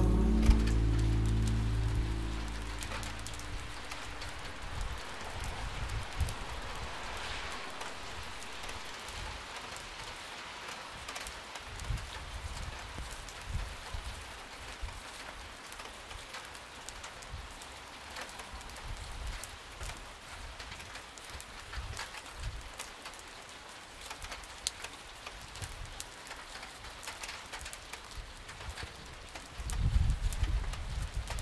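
Rain falling on a wet street: an even hiss with scattered drip clicks, with the song's last low notes fading out in the first couple of seconds.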